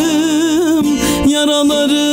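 A man sings a long wordless held note in a Turkish folk song, the pitch wavering and then settling steady about two-thirds of the way in. A bağlama (long-necked saz) is strummed under it.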